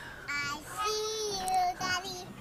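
A toddler girl's high-pitched, wordless singsong voice: a short sound, then one long held note through the middle that rises at its end, then another short sound.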